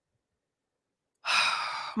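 Silence for about the first second, then a woman's breathy sigh, a short rush of air lasting under a second that runs straight into her speech.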